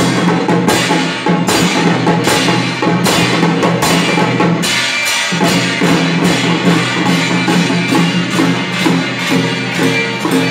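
Taiwanese temple-procession percussion troupe playing: hand cymbals clashing with a drum and gongs in a steady beat of about two strokes a second, with the gongs ringing on beneath the strikes.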